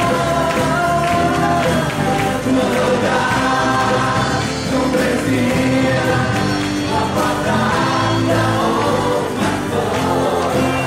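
A live worship song: a male lead singer strums an acoustic guitar and sings, with a female backing singer joining in, steady and loud throughout.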